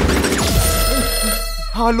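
A loud soundtrack cuts away about half a second in with a falling glide. A telephone then rings on a steady tone, and a man starts speaking over it near the end.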